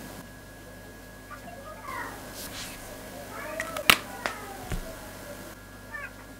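Two wavering, meow-like cat calls, the second ending in a loud sharp click about four seconds in, followed by a couple of lighter clicks of felt-tip marker caps as the markers are swapped.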